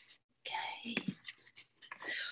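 Quiet, breathy speech: a soft spoken 'okay'.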